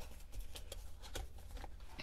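Faint rustling and a few light taps as a cardboard cornstarch box is closed up and handled.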